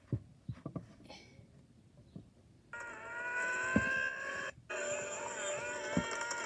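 Film soundtrack through a small phone speaker: a few light taps, then about three seconds in a long, sustained yell from a charging cartoon warthog begins. It breaks off briefly and then carries on.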